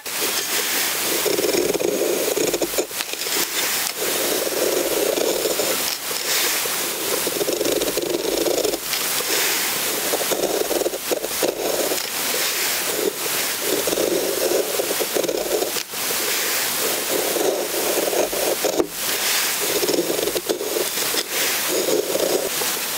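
A knife blade shaving curls down a wooden stick to make a feather stick: a series of about eight scraping strokes, each lasting a second and a half or so, with short knocks in the gaps between strokes.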